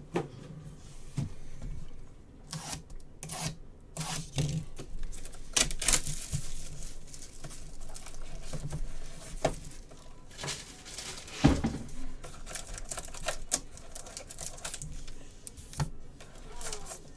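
Plastic shrink wrap crinkling and tearing as it is pulled off a trading-card box, with irregular taps and clicks as the box is handled and opened.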